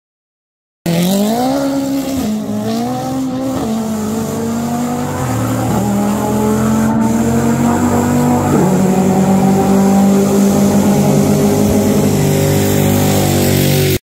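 Mitsubishi Lancer Evolution X's turbocharged four-cylinder engine on a full-throttle quarter-mile pass, starting abruptly about a second in, its pitch climbing and dropping back at each of several quick gear changes and growing louder toward the end.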